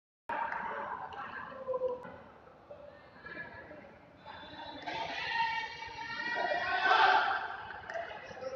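Human voices shouting and yelling in a hall, rising to a long, loud yell about seven seconds in.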